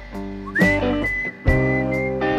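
A person whistling a melody over backing music of guitar chords and drums. The whistle slides up into a long high note about half a second in, with a new note near the end.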